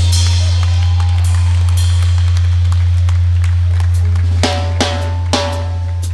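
Live drum kit: cymbals washing over a loud, steady low drone. From about four and a half seconds in come separate drum hits roughly every half second, each with a short ringing tone.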